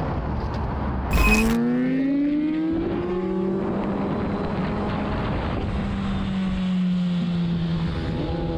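Motorcycle engine heard from the rider's seat, pulling up in pitch for about two seconds as the bike accelerates, then holding a steady cruise note that slowly drops, with wind rush. A short burst of noise about a second in marks the cut to this ride.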